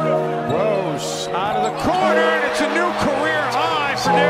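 Basketball game audio: arena crowd noise with many short squeaks of sneakers on the hardwood and a few sharp thuds, mixed under background music with held chords.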